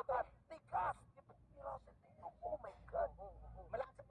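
Indistinct, fragmentary speech, voices heard through a screen's speaker, over a faint steady low hum.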